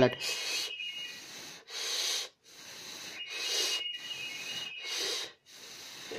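A person blowing breath in about five long exhalations with short gaps between them, two of them carrying a faint thin whistle. The breath is warming a temperature sensor, whose reading rises as it is blown on.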